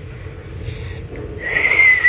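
A nursing newborn baby makes one high whistling squeak about one and a half seconds in, held on one pitch for under a second and rising just before it breaks off. A low steady rumble runs underneath.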